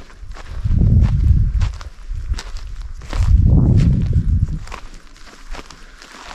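Footsteps on dry dirt and grass, a string of short crunches. Two longer low rumbles, each about a second and a half, are the loudest sounds: the first near the start, the second around the middle.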